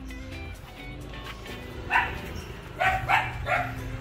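Background music with a dog barking four times: once about halfway through, then three barks in quick succession near the end.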